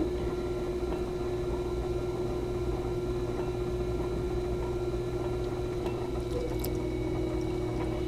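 Electric potter's wheel running at a steady speed, its motor giving a steady hum, while wet hands press and slide on the spinning clay to close in the top of an enclosed form.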